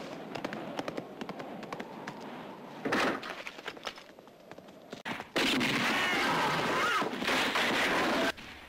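Film-soundtrack gunfight: a series of sharp gunshots and impacts, with one louder shot about three seconds in. In the last few seconds a steadier, louder din of noise takes over.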